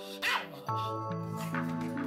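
A Pomeranian barks once, about a third of a second in, over background music of held chords that shift to a lower chord shortly after.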